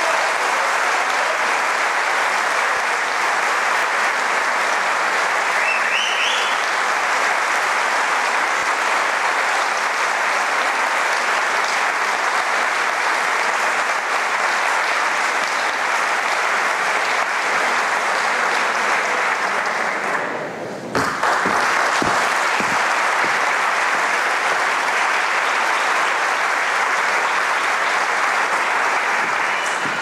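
Audience applauding steadily, with a brief drop about twenty seconds in, fading away at the end.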